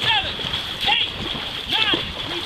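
Dragon boat paddles splashing through the water at a fast race stroke, with a short high shout from the crew on roughly every stroke, about one a second.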